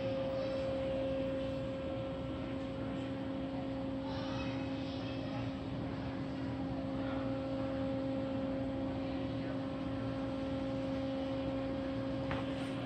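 A steady low droning hum holding one pitch throughout, the even background drone of a large exhibition hall, with faint distant voices.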